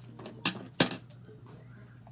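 Two sharp clicks about a third of a second apart, the second the louder, over a steady low hum.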